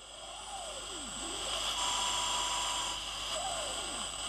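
Portable radio hissing with static, with whistling tones that sweep up and down and a steady whine for about a second in the middle. It is the sound of severely impaired reception when two radio waves arrive out of phase and cancel each other out.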